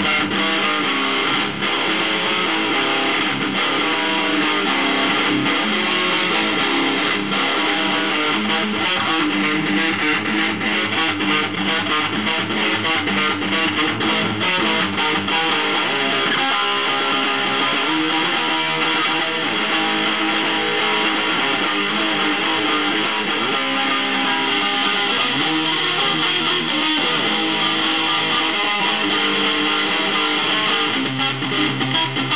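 Les Paul-style electric guitar played through an amp, a steady run of picked metal arpeggios with fast note attacks that are densest in the first half.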